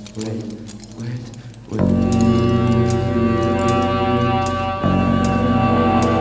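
A live band's music: a few short gliding tones, then about two seconds in a loud sustained chord of several held notes comes in. A light percussive tick sounds roughly every 0.8 s, and there is a brief break near the five-second mark before the chord resumes.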